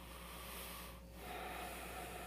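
A person's breath close to the microphone: a breath through the nose, then a second, fuller breath about a second later.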